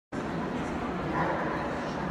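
Steady crowd chatter filling a large exhibition hall, with a dog barking in it.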